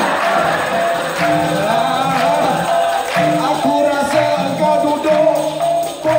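Dikir barat performance: a male lead singer (tukang karut) sings into a microphone over a steady beat of jingling hand percussion.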